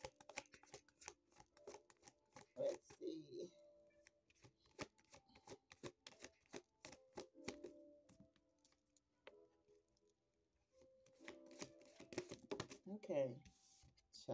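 A deck of oracle cards shuffled by hand: a quick, uneven run of light card clicks and flicks that thins out about two-thirds of the way through.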